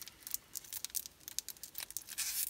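Packaging on a spool of ribbon crinkling and crackling in irregular little snaps as fingers pick at it, trying to tear it open by hand.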